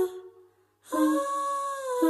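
A woman hums one wordless note for about a second over an acoustic guitar; the note dips slightly in pitch as it ends. A strummed guitar chord rings out as the note begins, and another chord is struck near the end.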